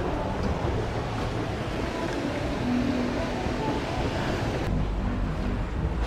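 Steady outdoor noise of ocean surf and wind on the microphone, with a deeper low rumble coming in a little before the end.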